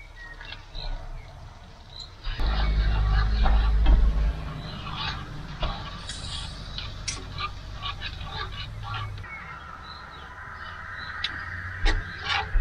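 A spatula stirring and knocking against a frying pan of shrimp in cream sauce, making scattered clicks and scrapes. About two seconds in, a loud low rumble lasts for about two seconds.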